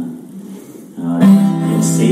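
Acoustic guitar: after a brief lull, a full chord is strummed about a second in and left to ring.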